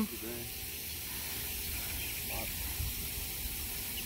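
Outdoor background with no distinct event: a steady high hiss over a faint low rumble.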